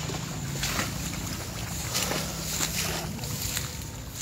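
Tall grass rustling and brushing against a handheld phone as the person carrying it walks through it, with scattered crackles, wind on the microphone, and a low steady drone underneath.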